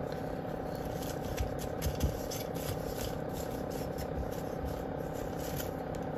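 Bark chips of orchid potting mix rustling and crunching lightly as fingers press them down around the plant in a terracotta pot, with a couple of small knocks, over a steady low room hum.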